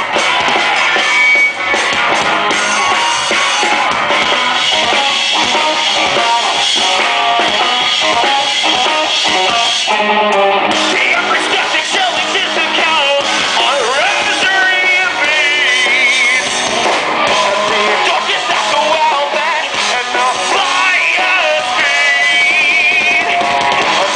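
Rock band playing live, loud and without a break: electric guitars, drum kit and a lead singer.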